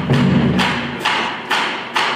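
School concert band playing, with a sharp percussion hit about twice a second over sustained low notes; the low notes fall away near the end.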